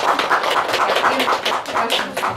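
A small group of people applauding, with many quick, uneven hand claps.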